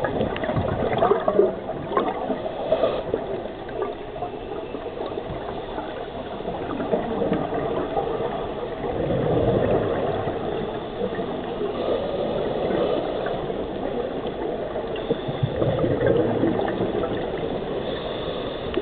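Water bubbling and gurgling, with scattered clicks and two louder swells of bubbles, about nine and fifteen seconds in.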